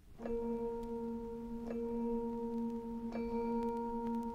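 Quiet opening of a light-orchestral piece played from a vinyl LP: a single low note held steadily in octaves with a bell-like ring, coming in a quarter second in. Faint soft clicks sound about every second and a half.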